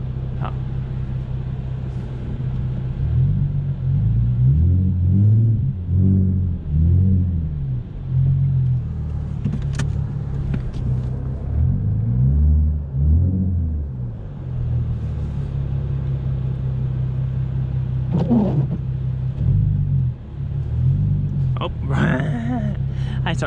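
Ford Mustang engine heard from inside the cabin, running steadily and revved up and down in repeated surges, mostly in the first half and again near the end, as the car is driven on icy snow.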